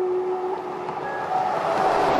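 A car passing close on the highway, its rushing noise swelling to a peak near the end. A flute-like music tone holds through the first half-second.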